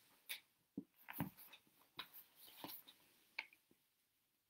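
Faint, irregular clicks and knocks, about a dozen short sharp ones spread over the few seconds, with near silence between them.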